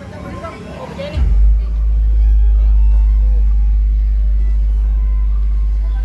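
A large bronze gong of a Betawi ondel-ondel music group struck once, about a second in. Its deep low hum is the loudest sound and rings on, fading slowly, with voices and chatter around it.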